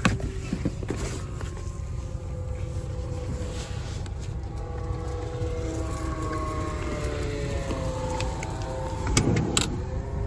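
A Honda Pilot's 3.5-litre V6 idling, heard as a steady low rumble inside the cabin, with a faint wavering hum in the middle. A few sharp clicks come near the end, as the seat and its trim are handled.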